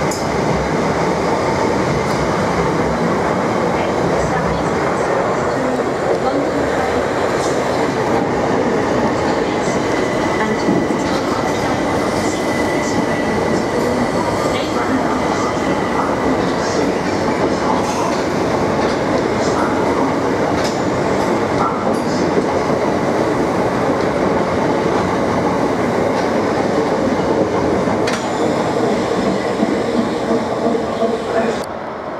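Southeastern electric multiple-unit trains running close by along the platform: a steady, loud rumble of wheels on rail, with scattered clicks and a faint high whine. Near the end a Class 375 Electrostar is running in.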